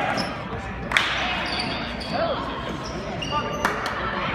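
Basketball game in a gym: a ball bouncing on the hardwood floor, with a sharp bang about a second in and another near the end. Voices carry in the echoing hall, along with short high squeaks.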